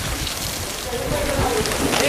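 A steady rushing hiss of outdoor noise, with faint murmuring voices of a group of people in the second half.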